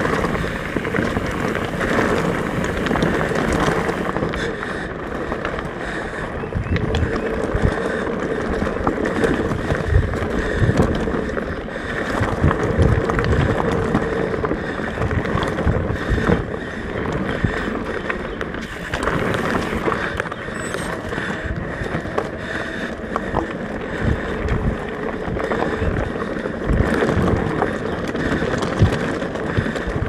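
Mountain bike ridden along a dirt singletrack trail: steady wind rush on the camera microphone over tyre noise, with frequent low thumps from bumps in the trail.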